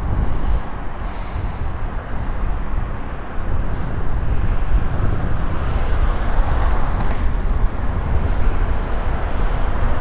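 Highway traffic passing below: a continuous wash of tyre and engine noise with a low rumble, growing louder a few seconds in as vehicles go by.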